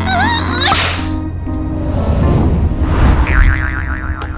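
Cartoon whoosh sound effects, a swish about a second in and a longer swell later, over background music with a steady low note.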